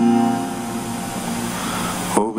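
Acoustic guitar chord strummed once and left ringing, fading slightly as it sustains.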